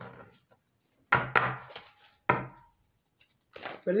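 A deck of oracle cards being handled and shuffled, knocked sharply against the table three times: two knocks close together about a second in, then one more a second later.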